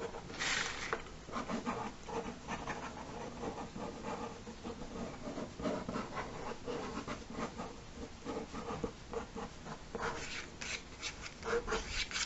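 Felt-tip ink pen scratching on paper in quick scribbling strokes, filling in shading. The strokes come thicker and faster near the end.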